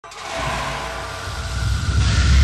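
Logo intro sound: a deep rumble with hiss that starts suddenly and builds louder, leading into the production-logo music.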